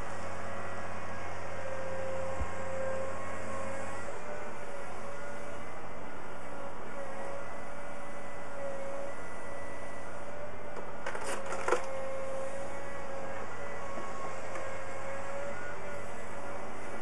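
Volvo tracked excavator with a hydraulic demolition grab running steadily, a slightly wavering whine over a low engine drone. About eleven seconds in, a short cluster of sharp cracks is heard as the grab breaks material out of the house.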